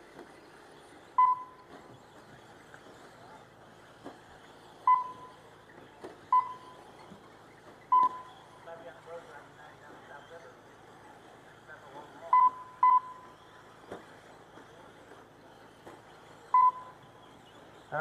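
Race lap-counting system beeping as cars cross the timing line: seven short, clear electronic beeps at uneven intervals, two in quick succession a little past the middle, over a low background of outdoor murmur.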